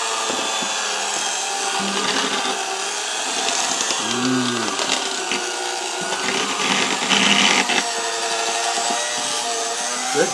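Handheld electric mixer running steadily, its beaters whipping mashed potatoes in a stainless steel pot.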